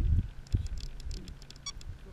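A single short electronic beep near the end, over low rumbling noise that dies down after the first half-second, with a soft thump about half a second in and faint light clicks throughout.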